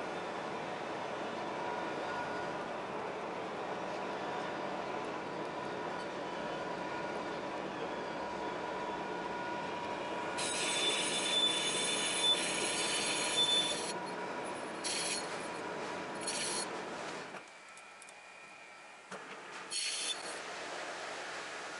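Lathe running while a spinning roller draws a 2 mm steel disc over a mandrel. About halfway through, the roller pressing on the steel gives a shrill metal-on-metal squeal that lasts a few seconds, then comes back in two short bursts. Near the end the sound drops away sharply, and a brief burst follows at the very end.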